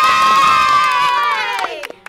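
Children cheering, one long high shout held for about a second and a half that drops in pitch at the end.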